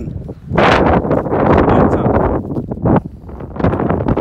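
Wind buffeting the phone's microphone in loud gusts, starting about half a second in and easing off near the end.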